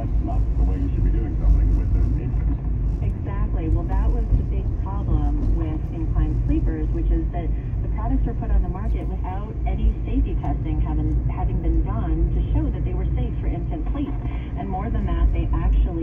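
Steady low rumble of a car driving on a winding road, heard from inside the cabin, with indistinct voices over it.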